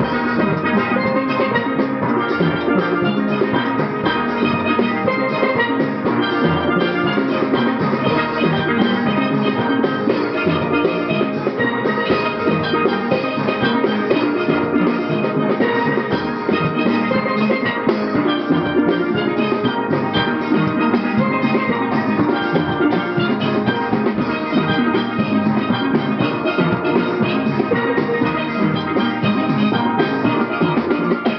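A steel band playing steelpans in ensemble: many pans struck with sticks in a continuous, rhythmic piece of music, with no break.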